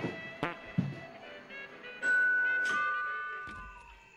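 Two-tone doorbell chime, ding-dong, about halfway through: a higher tone, then a lower one, both ringing out and slowly fading. Faint music plays before it.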